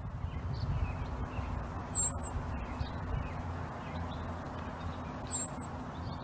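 Outdoor background noise: a steady low rumble under a hiss. A faint, high, wavering call repeats about every three seconds.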